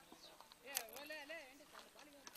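A faint, distant high-pitched voice calling with a wavering pitch, together with a few sharp clicks.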